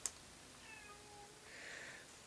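A house cat's faint meow, one short call about halfway through.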